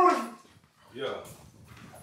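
A person's long, high, wailed "nooo" trails off about a third of a second in. After a brief quiet, a short rising-and-falling cry of "no" comes about a second in.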